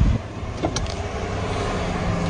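Steady low rumble of road and engine noise heard inside a car's cabin, with a faint click under a second in.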